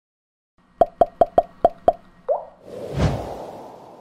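Intro sound effect: six quick pops in a row, a short rising blip, then a swelling whoosh with a low hit that fades away.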